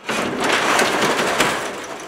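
Garage door flung open: a sudden loud rattle that carries on for about a second and a half and fades near the end.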